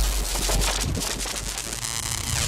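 Glitch-style logo intro sound effect: a burst of crackling digital static over a deep bass rumble, slowly fading.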